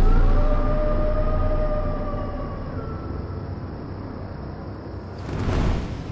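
Dark, suspenseful soundtrack music: a deep drone under a single held tone, slowly fading. Near the end a rushing whoosh swells up and peaks as the glowing flying vessel sweeps across the sky.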